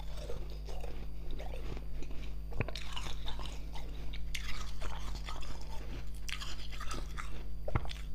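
Frozen slush ice being chewed and crunched between the teeth, close to a clip-on microphone: irregular crunching throughout, with a few sharp cracks as pieces break.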